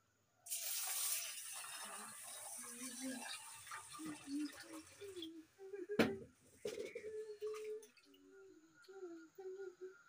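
Water poured from a steel jug into a stainless steel bowl of rice for rinsing: a splashing pour that starts about half a second in and tapers off over several seconds. A sharp metallic clink comes about six seconds in.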